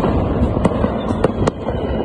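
Fireworks going off across the city at night: sharp cracks a few times a second over a steady low background noise.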